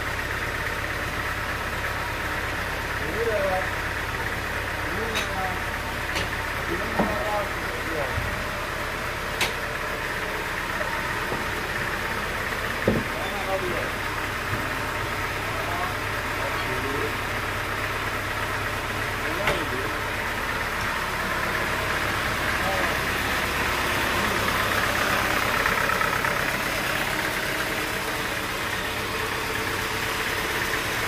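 Band sawmill machinery running steadily without cutting, a constant low hum, with several sharp knocks as a large teak log is shifted into place on the carriage. Voices talk over it in the first part.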